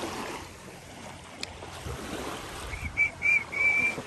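Small waves washing softly onto a sandy shore, a steady hiss that swells and eases. Near the end a high whistle sounds three short times and then once longer, louder than the surf.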